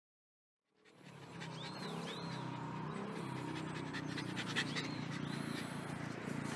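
A Shiba Inu panting, fading in about a second in, with two pairs of short high chirps and a steady low hum behind.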